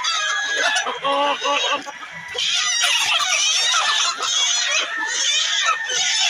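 Chickens clucking and squawking. From about two seconds in the squawking turns loud and continuous as a chicken is grabbed and carried by its legs.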